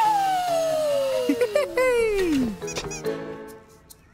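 Cartoon falling sound effect: a long whistle-like tone slides steadily down in pitch over about two and a half seconds, over background music that then holds a chord and fades away near the end.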